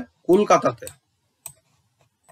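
A voice speaks one short word, then a single sharp click about a second and a half in, made while handwriting is drawn onto the screen.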